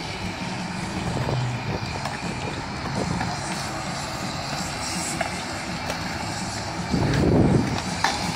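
Skateboard wheels rolling on smooth concrete amid a steady skatepark din, with one louder rolling pass about seven seconds in.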